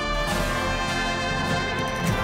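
Instrumental background music with brass, at a steady level.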